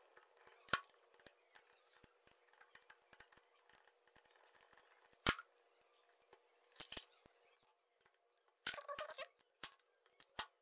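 Small Phillips screwdriver working a screw out of a plastic webcam case, heard as scattered faint clicks and ticks, with a sharper click about five seconds in and a quick run of plastic clicks near the end as the case is handled.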